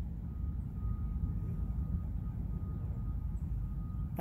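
Steady low rumbling outdoor background noise, with a faint thin high tone entering shortly after the start and holding steady.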